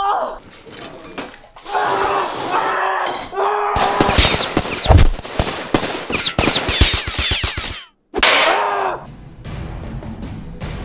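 Fight-scene sound: a man yelling in pain several times, then a fast run of sharp hits or shots lasting about four seconds. It cuts off suddenly, followed by one more loud cry.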